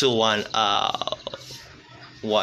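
A person's voice: a drawn-out vocal sound that falls in pitch, then breaks into a creaky, rattling croak that fades out about a second and a half in.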